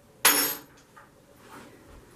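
A sharp metallic clink as a metal tool is knocked or set down on a hard surface, ringing briefly, followed by a couple of faint taps.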